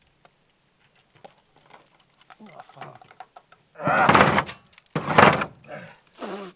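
Two loud, rough strokes of a hand scraper against a painted wooden house wall, about four and five seconds in, after a near-silent start with faint knocks.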